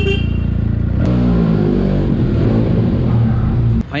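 Motorcycle engine running under the rider, rising in pitch as it speeds up about a second in. The sound cuts off suddenly just before the end.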